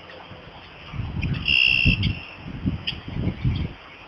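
Wind buffeting the microphone in irregular low rumbles, with one steady high-pitched bird note held for about half a second, a little over a second in.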